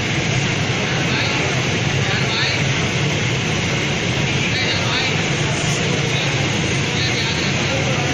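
Steady hum and hiss of a steam ironing setup running (electric steam boiler feeding a steam iron on an ironing table), loud and unchanging while cloth is pressed.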